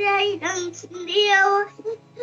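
A young child's high-pitched voice in three long, wavering, drawn-out wails: the toddler crying while trying to speak.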